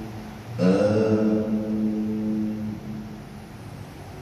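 A man's voice chanting Quranic recitation aloud in prayer: one long, held melodic phrase that starts about half a second in with a slight upward glide and fades out about three seconds in.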